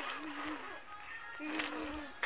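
Six-month-old baby humming in short held 'nn' sounds, one at the start and another about a second and a half in, each lasting about half a second.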